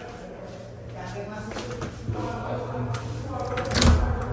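Faint background talk over a low steady hum, with a short knock near the end as a hand reaches the lid of a chest freezer.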